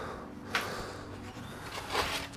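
Steel spade digging into soil mixed with concrete rubble: the blade scrapes and crunches into the ground about half a second in, and is driven in again near the end.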